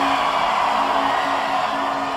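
Live concert crowd cheering and whooping, over a steady low held note of electronic music from the stage.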